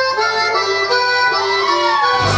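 Two accordions playing a chamamé opening: held reedy chords and a melody line with no bass or rhythm under them. A man's voice calls out near the end.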